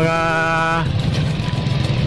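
Motorcycle engine idling with a steady low hum, under a drawn-out spoken syllable in the first second.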